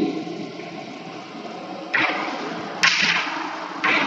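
Chalk scratching on a blackboard in short strokes while writing, three strokes in the second half over a steady hiss.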